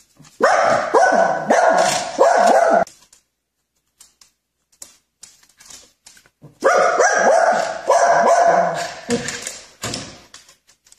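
A small white dog barking in two runs of quick barks, each two to three seconds long and about four seconds apart, with faint ticks in between.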